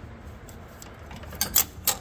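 A few light metallic clicks and taps from a band-type oil filter wrench being fitted around a mower engine's spin-on oil filter, the sharpest three coming in the second half.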